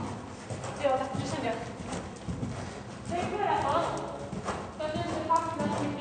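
Hoofbeats of ridden horses moving over indoor arena footing, with voices talking indistinctly over them.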